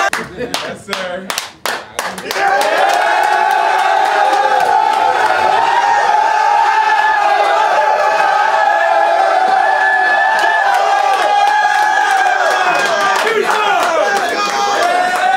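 A team of young men yelling and cheering together in a locker room: a quick run of sharp claps in the first two seconds, then a long, loud, sustained group shout.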